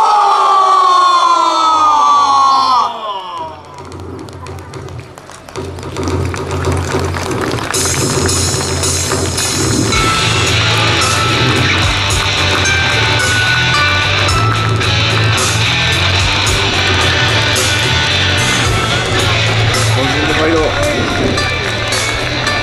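A long drawn-out shout, falling in pitch, answers the call to battle. After a short lull, music with a steady deep beat starts about five seconds in and grows fuller around ten seconds in.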